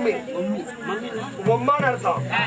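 Men's voices in Tamil stage dialogue. A steady low hum comes in just over a second in.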